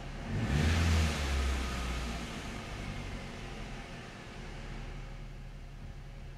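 Toyota Yaris petrol engine idling, revved once about half a second in and falling back to idle within about two seconds, a throttle blip to check that the tachometer responds.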